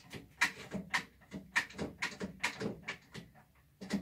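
A clamp being handled and tightened onto a machete handle: a string of irregular sharp clicks and knocks.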